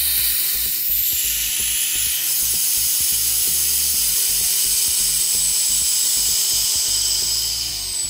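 Air hissing into a vacuum chamber as the vacuum is let down back to atmospheric pressure: a loud, steady hiss that starts suddenly and dies away near the end.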